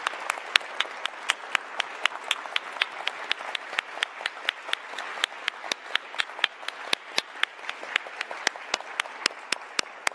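Audience applauding, with many sharp individual claps standing out from the steady clapping, thinning out toward the end.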